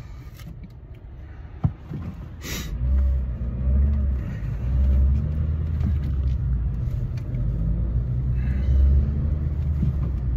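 Car engine and tyre rumble heard from inside the cabin while driving. The low rumble grows louder about two and a half seconds in, with a sharp click shortly before.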